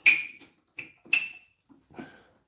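Three sharp metallic clicks with a brief high ring: a knife clamped in a Tormek knife jig being set against a diamond sharpening wheel to find the edge angle. The first click is the loudest; the other two come close together about a second in.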